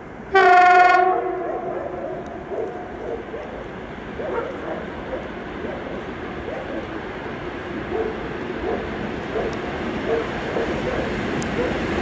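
VL10K electric locomotive sounding its horn once, a loud blast of about a second that sets in suddenly and then fades. After it comes the approaching freight train's steady rumble of wheels on rail, growing louder.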